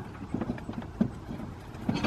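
A few light knocks and taps, about four spread over two seconds, over a low steady background hum.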